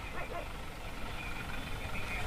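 Steady low rumble of street traffic with faint voices, heard as background on an outdoor field microphone.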